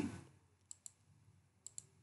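Two pairs of faint computer mouse clicks, about a second apart, against quiet room tone.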